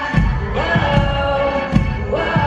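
Live pop-rock band with a female lead vocal, electric guitar and a kick drum thumping about twice a second, heavy in the bass as picked up from the audience.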